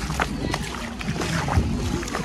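Shallow lake water splashing and lapping: a person wading through the shallows and small waves washing onto a sandy shore, with many short splashes over a steady low rumble.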